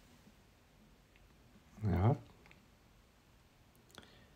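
Mostly quiet room tone, broken about halfway by a brief vocal sound from a person's voice, and near the end by faint clicks as the stiff pleated blind sample is handled.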